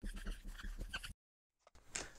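Dry-erase marker squeaking and scratching faintly on a small whiteboard card in short writing strokes, stopping about a second in.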